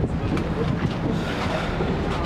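Wind rumbling on the microphone on the open deck of a moving passenger boat, with the boat's engine and water noise underneath as a steady wash.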